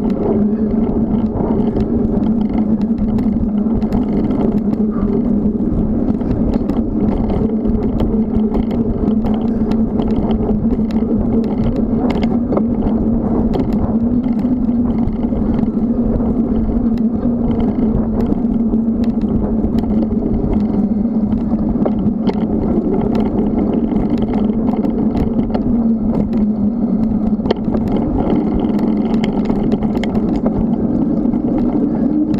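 Steady riding noise from a bicycle on a paved path, picked up by a bike-mounted camera: a constant hum of tyres rolling on concrete mixed with wind on the microphone. Frequent small clicks and rattles run through it.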